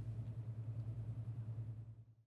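A low, steady hum with a fast, even flutter, faint and fading near the end.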